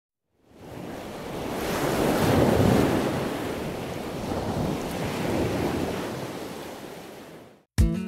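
Surf washing onto a rocky sea shore: a steady rush of waves that fades in, swells twice, and fades out just before the end.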